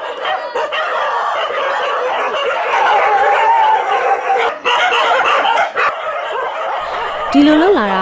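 Many dogs barking and whining at once in a dense, continuous clamour, with a drawn-out whine about three seconds in.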